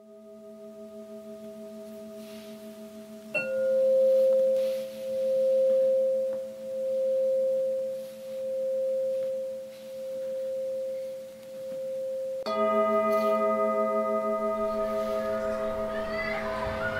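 Sustained bell-like ringing tones that fade in. A new, louder tone starts sharply about three seconds in and pulses slowly, swelling and fading about every second and a half. A second sharp onset near the end brings a fuller chord of ringing tones.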